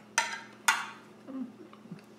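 Two sharp clinks, about half a second apart, of a fork against a ceramic plate, each ringing briefly.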